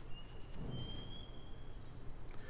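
Pause in a talk: room tone with a steady low hum, and a faint, thin high whistle-like tone held for about a second and a half.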